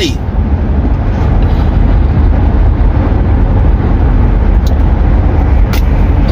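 Steady road and engine rumble inside the cabin of a moving car at highway speed.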